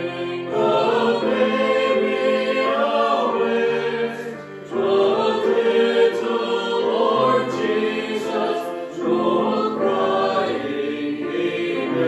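Mixed choir of men and women singing a hymn together, with electric keyboard accompaniment. The singing breaks briefly between lines about four and a half seconds in.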